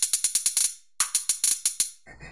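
Crisp hi-hat-type percussion samples from Splice's Beatmaker, played from the computer keyboard. Two fast rolls of bright ticks, each under a second, with a short silence between them.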